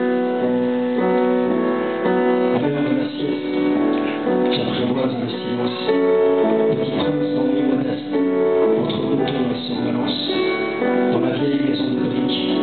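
Live instrumental music with held keyboard chords that change every second or so and grow busier a few seconds in.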